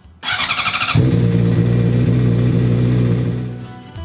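A 2005 Honda CBR600RR's inline-four engine is started: a brief spin of the starter, then the engine catches about a second in and idles steadily. The oil is being warmed up ahead of draining it. The sound fades away near the end.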